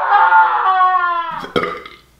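Transition sound effect: one long pitched note with several overtones, sliding slowly downward and fading out after about a second and a half. A short knock follows near the end.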